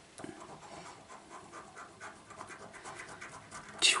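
A coin scratching the silver coating off a paper scratchcard, in a long run of quick, short strokes.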